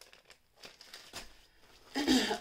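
Faint crinkling and rustling of plastic packaging being handled, a few short scattered rustles.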